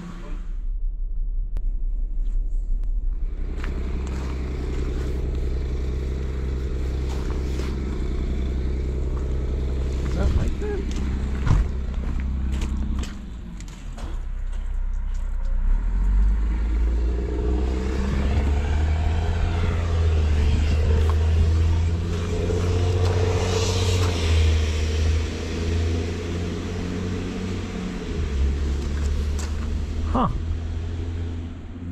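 A vehicle engine running with a steady low drone. It dips briefly about halfway through, then picks up again.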